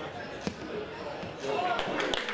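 A football being struck hard once, a sharp thud about half a second in, over players' shouts and chatter on the pitch.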